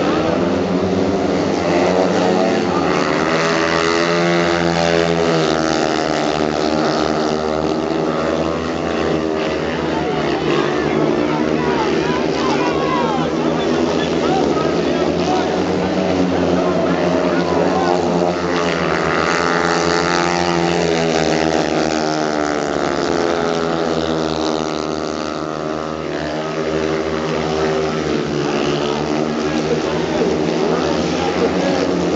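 Speedway motorcycles racing round a dirt oval, their single-cylinder engines wailing and repeatedly rising and falling in pitch as they pass, brake into the turns and drive out of them.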